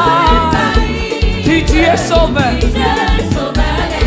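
Live gospel worship music: a woman sings lead into a microphone with a wavering vibrato, the congregation sings along, and a band plays a steady bass beat underneath.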